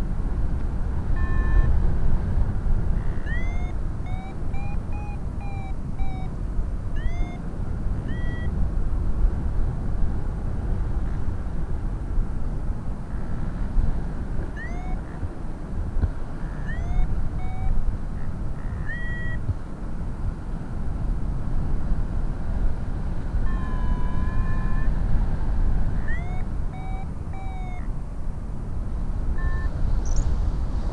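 Rushing wind buffeting the microphone of a camera on a paraglider in flight. Over it come a variometer's short electronic beeps and chirps, many gliding upward in pitch, sounding at irregular moments.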